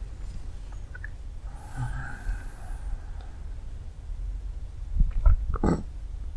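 Low, steady room rumble in a pause, with a short nasal or throat sound from a reclining person about five seconds in.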